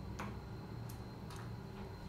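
Regular sharp clicks, about two a second, from the elevator car as its floor button is pressed.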